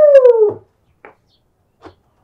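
A single loud, drawn-out high cry, rising slightly and then falling in pitch, which ends about half a second in; a few faint clicks follow.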